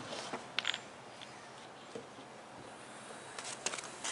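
A few light knocks and clicks of a 2x4 board being handled against OSB roof decking, a cluster in the first second and another near the end, with quiet in between.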